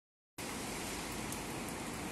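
Steady outdoor background noise, an even hiss without any distinct events, starting a moment after the opening silence.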